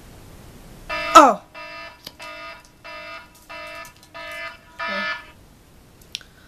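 Phone timer alarm going off: a run of six short, steady-pitched electronic beeps about two-thirds of a second apart, marking the end of a three-minute countdown. A loud, short falling sound comes just before the beeps, about a second in.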